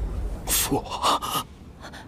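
A man's sharp gasp followed by one short spoken word, over a low rumble that fades out partway through.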